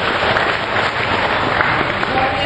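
Live theatre audience applauding: a dense, steady clatter of many hands clapping.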